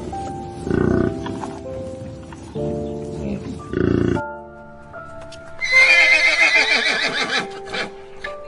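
A horse whinnying: one long, quavering neigh of about two seconds in the second half, the loudest sound here, over soft piano music. Earlier there are two short, low bursts of sound.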